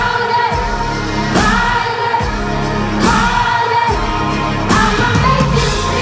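Live pop band playing with a woman singing lead into a microphone, her sung phrases starting about every one and a half seconds over drums and bass, recorded from within the concert crowd.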